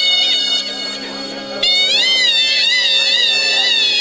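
Shehnai-type reed pipes playing a wailing melody over a steady drone. The sound dips briefly, then about a second and a half in the lead pipe comes back in with a rising slide and a wavering, ornamented line.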